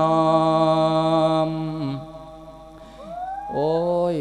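A monk's voice singing an Isan lae sermon: one long held note that breaks off about two seconds in, then a new phrase that rises in pitch near the end.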